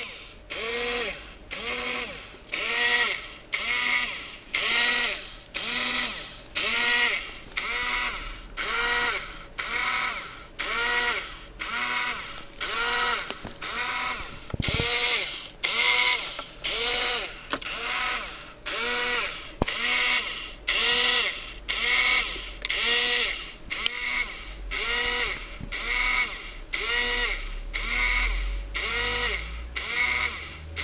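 Two small yellow DC gearmotors of a differential-drive robot, switched by L293D driver chips, whirring in bursts of about half a second with equal pauses, about one burst a second, each whir rising and then falling in pitch. The bursts are a motor test program cycling forward, reverse, left turn and right turn.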